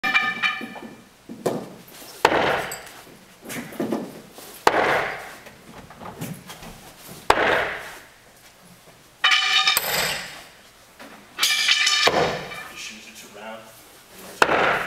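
Bo shuriken thrown one after another into a wooden target board: about six sharp strikes a couple of seconds apart, each ringing on in the room's echo, with a few short vocal sounds among them.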